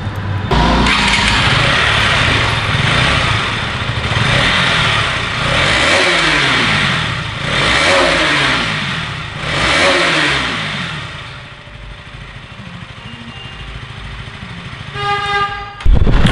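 Exhaust note of a KTM Duke 200 BS6's single-cylinder engine running in a garage, blipped three times with the throttle about two seconds apart, the pitch rising and falling each time, then dropping back to a quieter idle.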